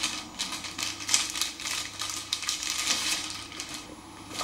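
Paper and a book being handled: a string of short, crisp rustles and light knocks.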